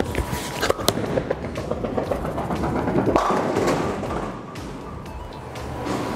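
Bowling ball released and landing on the wooden lane with a thud, rolling, then crashing into the pins about three seconds in, over background music.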